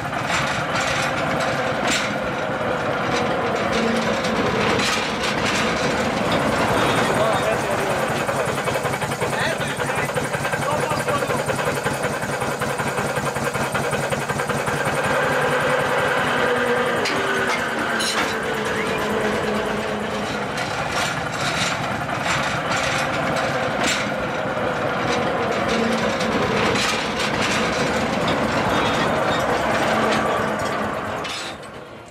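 Small narrow-gauge rail vehicle running along the track, giving a steady rumble with scattered sharp clicks from the wheels. Riders' voices can be heard underneath.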